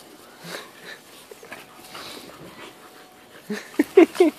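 Two dogs play-fighting: soft breathy panting and scuffling, then several short, sharp dog vocalizations near the end.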